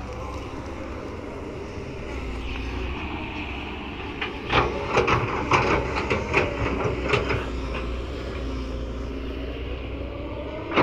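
Kobelco SK200 hydraulic excavator's diesel engine running steadily under load, with a burst of sharp knocks and clatter from about four to seven and a half seconds in as the bucket works the soil and clods strike.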